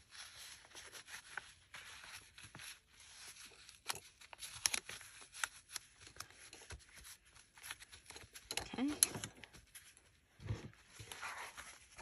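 Faint rustling and light scattered taps of paper and fabric being handled and pressed flat against a cutting mat.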